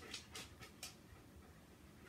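Near silence: room tone with a few faint, soft clicks in the first second.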